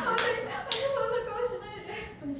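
Two sharp hand claps within the first second, over a young woman's voice making non-word sounds.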